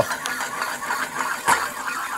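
Prinskorv sausages sizzling in a hot frying pan: a steady fat sizzle with a couple of sharper crackles.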